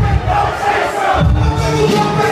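Live hip hop performance over a loud PA: a heavy bass beat with the crowd shouting along. The bass drops out for about half a second midway, then the beat comes back in.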